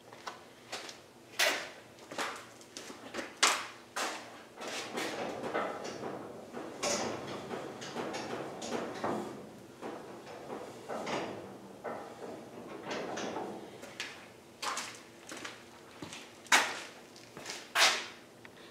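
A series of irregular knocks and clunks, about a dozen, with scraping between them in the middle seconds.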